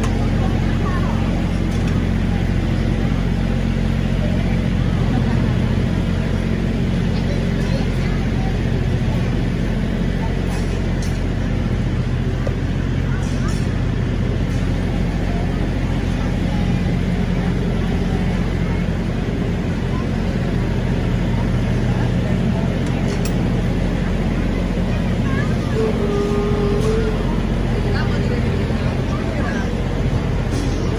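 Steady low machine hum with several level tones, unchanging throughout, with faint voices underneath.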